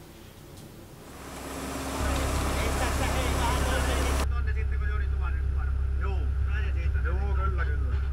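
Hyundai excavator's diesel engine running steadily at idle, a low hum that comes up about two seconds in and holds.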